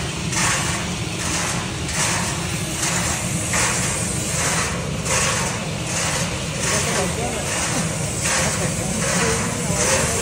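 Gas-fired rotating drum roaster running: a steady low rumble from the burner flame and drum drive, with a rush of noise that repeats about every two-thirds of a second.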